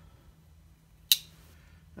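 A single short, sharp click about a second in, over a faint steady low hum.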